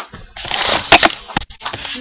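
Handling noise on a webcam's built-in microphone as the camera is grabbed and turned: a loud scraping, rubbing rush with a few sharp knocks about a second in.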